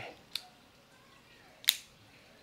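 A small click, then a sharp, loud click near the end as the DJI Action 3 camera is locked into its PGYTech cage. The camera has to click fully in like this, or it comes off the cage easily.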